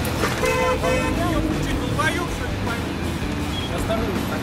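A car horn sounds briefly, a steady held note about half a second in and lasting roughly half a second to a second, amid raised voices around the car.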